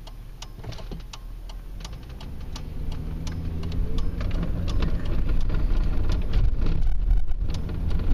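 Car engine and road noise heard inside the cabin, building up as the car pulls away from a standstill and gathers speed, with faint clicks scattered throughout.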